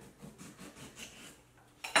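Kitchen knife cutting through a lime on a bar top, a few faint cutting taps, then one sharp knock near the end.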